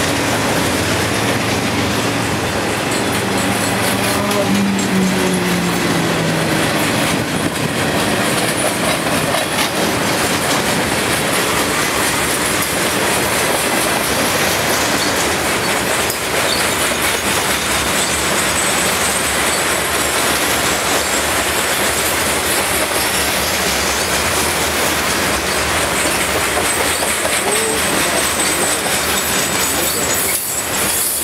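A long freight train of covered hopper cars rolls past at close range, its steel wheels running loud and steady over the rail joints with clickety-clack. A thin, high wheel squeal joins in during the second half.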